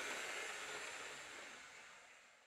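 Faint steady hiss that fades out toward silence.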